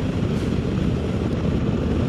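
2024 Harley-Davidson Road Glide's Milwaukee-Eight 117 V-twin running steadily at highway speed, mixed with wind rushing over the microphone.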